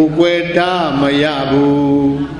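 A Buddhist monk's voice intoning a chant, holding long notes that glide up and down, over a steady low hum.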